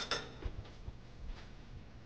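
A few light clinks and faint ticks from a metal spoon and a glass salad bowl being handled: a short cluster right at the start, then scattered soft taps.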